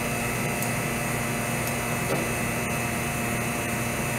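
Vacuum pump running steadily, a constant hum and hiss as it holds the lamination bags drawn down over a prosthetic socket layup. A few faint small ticks sound over it.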